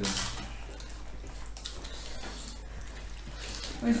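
Faint eating sounds at a dining table: soft chewing and a few small clicks of food and plates, over a steady low hum.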